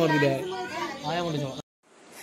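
Children's voices talking and calling out, cut off abruptly about a second and a half in.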